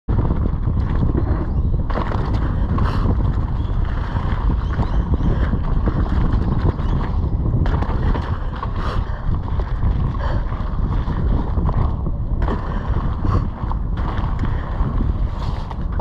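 Wind buffeting the GoPro's microphone at riding speed, over the tyres of a Norco Sight A3 mountain bike rolling across rocky dirt, with short rattles and knocks from the bike over bumps.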